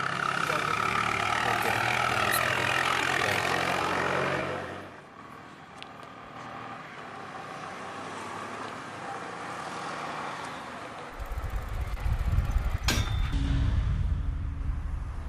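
Motor vehicles on a road: a loud passing engine for the first few seconds, a quieter stretch, then a low, pulsing engine sound rising loud near the end, with a sharp click shortly before the end.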